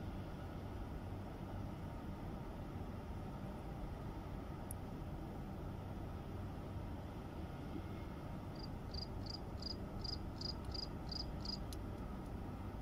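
Steady low background rumble, with a cricket chirping about nine times, some three chirps a second, from a little past the middle almost to the end.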